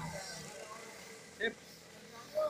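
Speech: a man's voice saying a couple of short words, with a low steady background hum.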